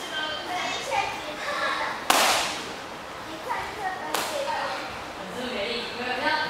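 Two sharp slaps of a bare-foot kick striking a handheld paddle kick target, about two seconds apart, the first much the louder. Faint voices in the background.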